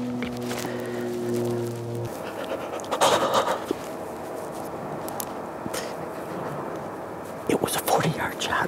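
A steady held music chord cuts off about two seconds in. Then a bowhunter breathes hard and whispers behind his gloved hand, with a burst of breath about three seconds in and another near the end.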